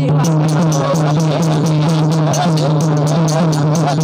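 Live devotional bhajan music: several voices singing together over a steady low drone, with light, regular strokes of small hand cymbals (manjira).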